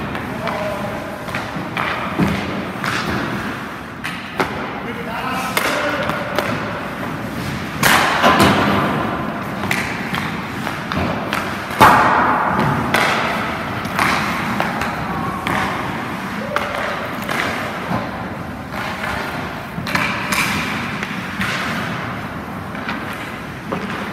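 Hockey pucks being shot and hitting goalie pads, sticks and boards: a run of sharp thuds and cracks, the loudest about twelve seconds in, with scattered voices between.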